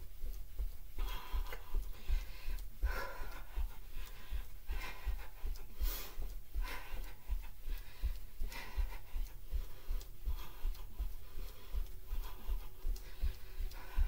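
A woman breathing hard, about one breath a second, over a steady run of low thuds from bare feet jogging in place on a carpeted floor.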